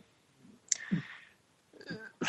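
A pause in a speaker's talk: a single sharp mouth click about two-thirds of a second in, a short breath, then faint voice sounds near the end as speech resumes.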